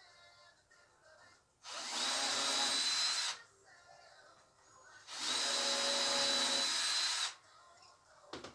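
Power drill running in two bursts of about two seconds each, a steady high whine, with a short pause between them.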